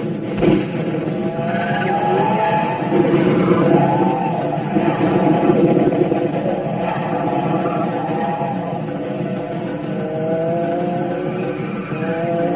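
Car engine revving and accelerating in a film's action soundtrack, its pitch rising again and again. A sharp bang comes about half a second in.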